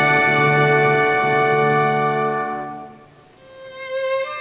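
An orchestra holds a full sustained chord that fades away about three seconds in. A single violin note then enters and swells near the end.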